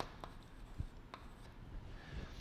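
Faint sound of handwriting, with a few light clicks.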